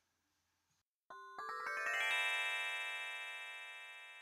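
Short electronic musical sting: after about a second of silence, a quick rising run of bell-like synthesizer notes builds into a held chord that slowly fades.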